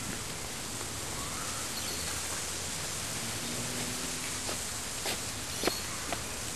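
Steady hiss of outdoor background noise on the camera's microphone, with a few faint short clicks in the last two seconds.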